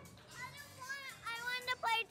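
A young child's voice answering quietly and unclearly, over background music and the sound of children playing.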